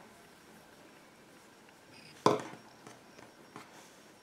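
A single sharp knock on a tabletop about two seconds in, followed by a couple of faint taps, as hands set the crochet work down flat on the table; otherwise quiet room tone.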